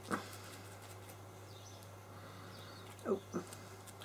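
Faint soft dabbing of a paint sponge on silicone doll skin, over a steady low hum, with a short spoken "oh" about three seconds in.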